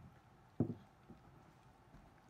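Quiet room tone, broken once, about half a second in, by a single short spoken word from a man.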